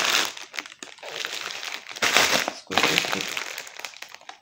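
A kraft-paper bag with a plastic window, full of dry spelt pasta, crinkling in several rustling bursts as it is handled and turned over.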